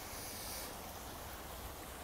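Shallow woodland stream running over stones and a small cascade, a faint, steady babbling.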